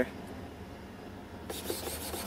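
A brief dry rustle about one and a half seconds in as a foam model plane is turned over in the hands, over a low steady background hum.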